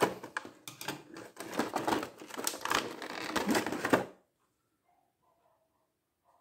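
Clear plastic blister tray of a figure package clicking and crinkling in the hands as a small accessory is worked out of it: a dense run of sharp plastic clicks that stops about four seconds in.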